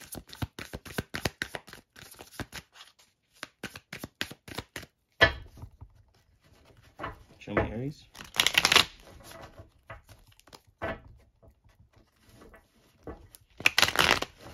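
A deck of tarot cards shuffled by hand: a quick run of small clicks as cards slap together, then a louder knock about five seconds in, followed by slower sliding and clicking of the cards.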